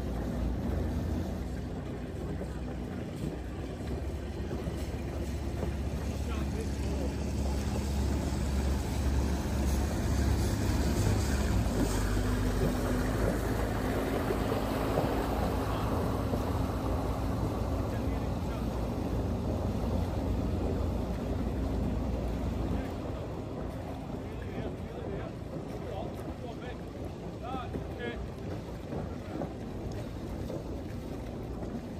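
Low, steady engine drone of a motor cruiser passing close by on the river, with its wash on the water. The drone grows through the first half and drops away abruptly about three-quarters of the way through.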